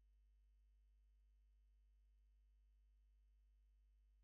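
Near silence, with only a faint, steady low hum.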